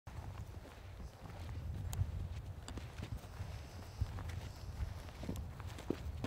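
Footsteps on dry, stony hillside ground: irregular scuffs and knocks over a low steady rumble.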